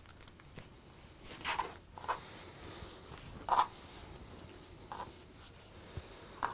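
Cotton patchwork fabric being handled and slid across a cutting mat while the pieces are lined up and pinned: a few short, soft scuffs and rustles.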